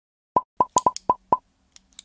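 Intro sound effect: a quick run of about seven short, pitched plops over roughly a second, each cut off almost at once.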